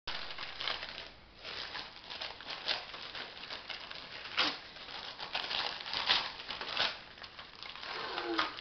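Gift wrapping paper being torn and crumpled by hand as a small present is unwrapped, in irregular rips and crinkles with a brief lull a little after a second in.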